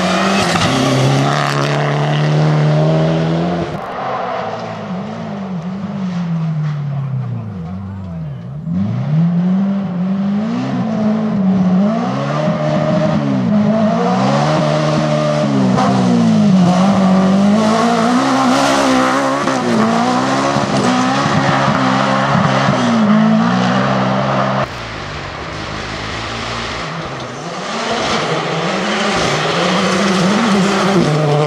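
Rally cars on a gravel stage, a Mitsubishi Lancer Evolution and then a Honda Civic among them. Their engines rev hard and drop again and again through gear changes and corners, over the hiss of tyres throwing gravel. The sound changes abruptly a few times as one car cuts to the next.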